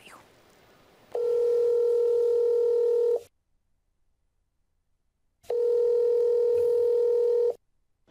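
Telephone ringback tone on a recorded call: two long, steady beeps of about two seconds each, a little over two seconds apart, heard while the called phone rings unanswered.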